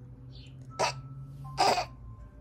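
Two short breathy vocal sounds, about a second apart, over a low steady hum.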